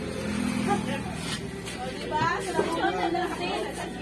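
Several people talking over one another: indistinct party chatter.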